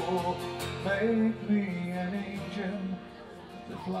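A steel-string acoustic guitar strummed as accompaniment, with a man singing a country ballad over it.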